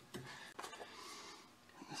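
Faint clicks of cutting pliers snipping the thin metal flange of a Speedi-Sleeve on a trailer axle spindle, with a soft breath around the middle.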